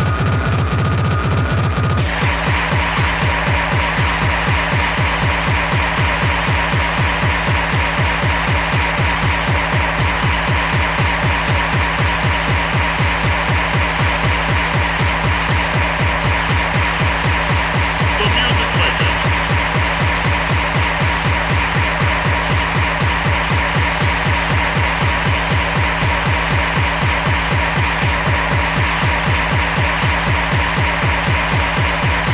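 Fast electronic rave music from a DJ's mix, with a steady driving beat and heavy bass; an upper layer of the track drops out about two seconds in.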